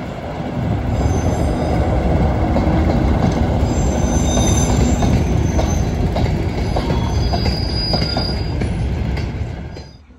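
An English Electric Class 37 diesel locomotive running past with a train of freight wagons: a loud engine rumble, then the wagons' wheels clicking over the rail joints with thin, high wheel squeals. The sound cuts off suddenly just before the end.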